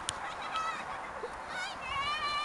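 High-pitched squeals of a child riding a snow tube: short wavering calls about half a second in and again near the end.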